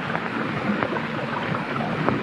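Steady sound of a boat under way on open sea: water rushing and splashing against the hull, with wind.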